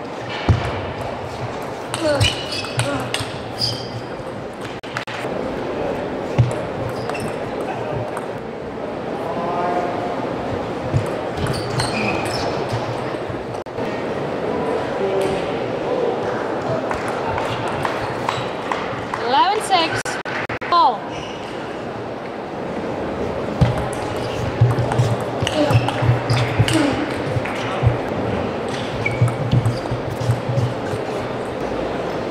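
A table tennis ball clicking back and forth between bats and table in quick rallies, against the steady noise of a large arena crowd with voices in it.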